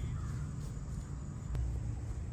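Thunder rumbling low and steady, with a faint bird call near the start.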